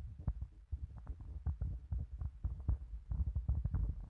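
Low rumble and irregular dull knocks on a handheld phone's microphone, several a second, as it is carried along.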